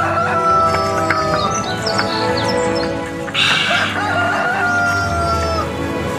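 A rooster crowing twice, each crow a long held call that sags slightly at the end; the second starts about three seconds in. Background music plays underneath.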